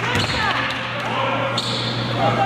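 Indistinct voices of players and spectators echoing in a gymnasium, over a steady low hum.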